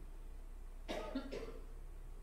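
A man coughing briefly, two quick coughs close together about a second in.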